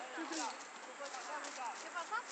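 Children's voices shouting and calling out during a youth football game: short scattered calls over a steady outdoor hiss, with a few sharp knocks.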